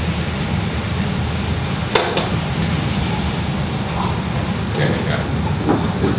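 Steady low room hum, with one sharp click about two seconds in and faint voices near the end.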